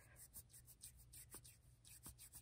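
Faint, quick back-and-forth rubbing of two palms pressed together over a moistened join in wool yarn. The friction is felting a spit splice that joins the two yarn ends.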